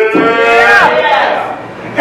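A man's long, sung exclamation held on one pitch for almost a second, then sliding down and fading out. It is the chanted, tuned delivery of a preacher in full flow.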